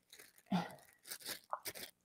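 Faint crinkling of a plastic bag and squishing of homemade glue slime as it is kneaded and pulled off the bag, in a few short scattered crackles.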